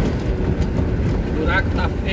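Inside the cab of a Mercedes-Benz 1218 truck: the diesel engine and the tyres keep up a steady low drone and road rumble as it drives over a rough, patched highway. A brief voice is heard near the end.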